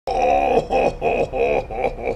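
A man's voice making a quick run of about six short wordless calls, roughly three a second, with a wavering pitch.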